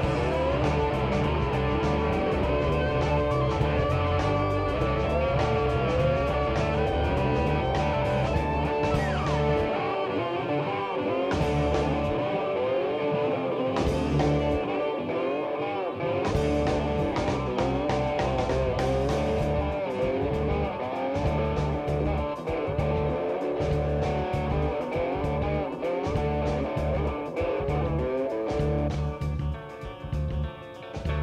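Live rock band playing: electric violin carrying a sliding melody over electric guitar, bass and drum kit. The bass and low drums drop out for a few seconds around the middle, and the music thins out near the end.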